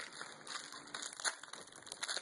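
Plastic wrapper of a Twinkie snack cake crinkling as it is pulled open by hand, with irregular small crackles.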